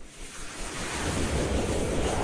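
A rushing whoosh sound effect from an animated logo intro: a wash of noise that starts suddenly, swells louder over about a second, then begins a rising sweep near the end.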